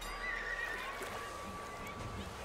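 Quiet outdoor ambience: a faint background murmur with a short high chirp in the first half-second and a faint steady high tone underneath.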